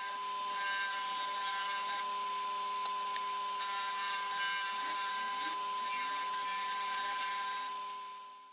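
Benchtop disc sander running with a steady hum while the inside edge of a hardwood handle blank is sanded against its disc.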